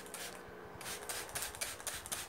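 Small spray bottle spritzing fragrance onto bed linen in a run of short hissy squirts, several in under two seconds.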